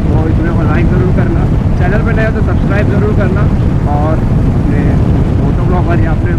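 Heavy wind rumble and motorcycle engine noise on a helmet-mounted earphone mic while riding at speed, with a man's voice talking over it throughout.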